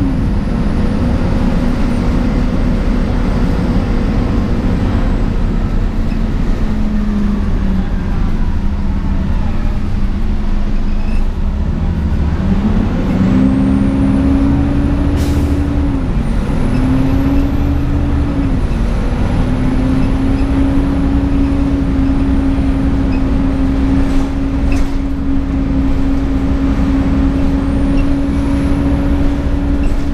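A 2004 Gillig Advantage transit bus heard from inside the cabin while under way: the engine and drivetrain run with a steady whine over road rumble. Around the middle the whine's pitch sinks, then climbs back in several steps, typical of the bus slowing and picking up again through its gears.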